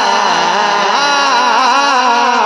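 Naat singer's voice through a PA system, a wordless melismatic line that wavers and slides up and down, over steady held keyboard notes.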